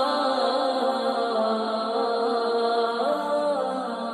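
Slow melismatic vocal chanting, with long held notes that waver and ornament in pitch.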